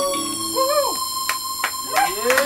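A live rock band's last notes ringing out as steady held tones, while the crowd whoops and a few hand claps start in the second half.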